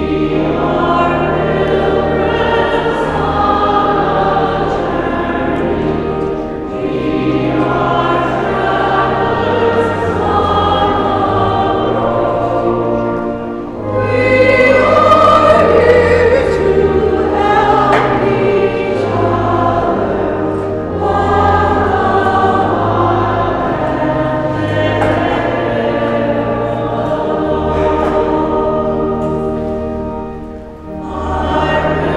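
Church choir singing a hymn over sustained low accompaniment notes, in phrases of about six to seven seconds with brief breaths between them.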